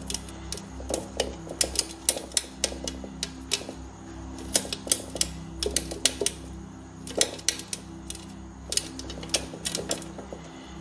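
Sun conure chick scrabbling against the wall of a plastic tub, its claws and beak making irregular sharp clicks and taps in quick clusters, over a steady low hum.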